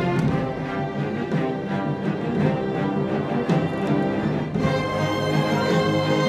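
Symphony orchestra playing live, strings, woodwinds and brass together. Repeated accented strokes drive the first four and a half seconds, then the music settles into held chords.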